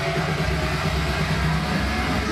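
Loud live band music through a stage sound system, carried by a heavy, steady low bass, with no singing.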